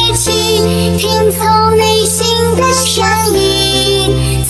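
Dance remix music: a sustained synth bass line under a high, pitch-processed vocal melody, the bass changing note about a third of a second in and again after about three seconds.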